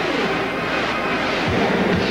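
Commercial soundtrack: loud music mixed with a rushing, jet-like sound effect whose pitch falls near the start.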